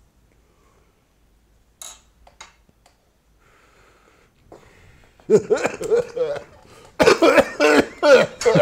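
A man coughing hard after inhaling cannabis smoke: mostly quiet for the first few seconds while the smoke is held in, then from about five seconds in a run of loud coughs, one after another.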